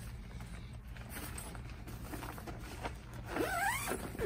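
Nylon Babolat Pure Drive backpack being handled and turned over: fabric rustling and zipper scraping as the open bag is moved.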